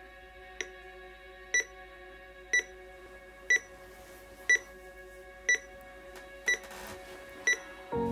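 Digital alarm clock beeping: eight short, high electronic beeps about one a second, over a soft music bed of long held notes.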